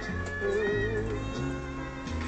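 Music: a song with a bass line stepping from note to note under a wavering lead melody with heavy vibrato.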